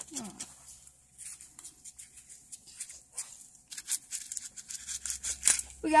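A paper coin-roll wrapper on a roll of pennies is torn and peeled open by hand. It crackles in irregular small clicks, sparse at first and busier in the last couple of seconds as the copper pennies come free and clink against each other.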